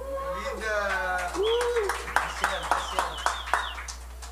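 A person's voice, then about six sharp clicks roughly a third of a second apart in the second half.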